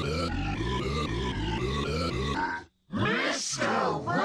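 Cartoon soundtrack played back pitched down: music with a repeating stepped melody that stops about two and a half seconds in, then, after a brief gap, a drawn-out, wavering deep voice-like cry.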